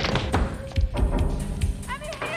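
A run of heavy thuds and knocks against a wooden door, under tense horror-film score music.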